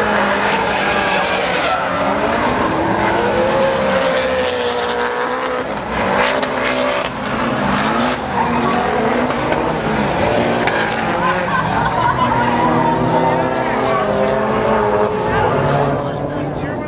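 Several drift cars sliding in tandem, engines revving hard with pitch rising and falling and tyres squealing through the drifts.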